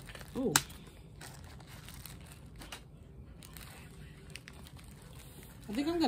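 Faint crinkling and rustling of packaged items and plastic wrap being pushed around in a plastic basket by hand, with one sharp click about half a second in.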